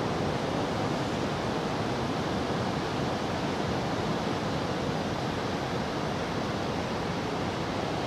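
Steady rush of ocean surf on a sandy beach.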